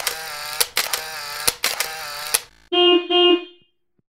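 A loud pitched sound with a wavering pitch and a few sharp clicks for about two and a half seconds. Then come two short honks of a steady pitch, and the sound stops.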